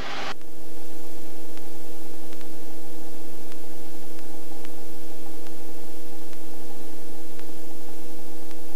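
Steady cabin noise of a Robinson R44 helicopter in low, slow flight: a loud, even hiss with several steady hums under it and a faint click now and then.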